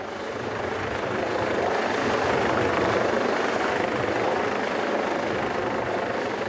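Coastguard search-and-rescue helicopter close overhead, its rotors and engines making a dense, steady rushing noise. The noise grows louder over the first couple of seconds as the helicopter comes in, then holds.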